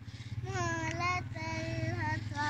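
A young girl's voice chanting in long held notes that waver slightly, with a short break partway through, over a steady low hum.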